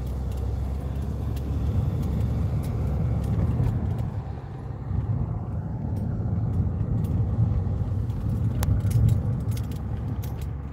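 Car cabin noise while driving: a steady low rumble of engine and tyres on the road, with a few light rattling clicks now and then.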